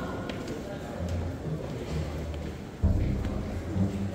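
Indistinct chatter of visitors echoing in a large hall, with footsteps on a staircase; a low rumble comes in suddenly near three seconds in.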